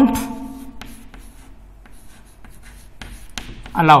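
Chalk writing on a chalkboard: a run of short, faint scratches and taps as a word is written out stroke by stroke.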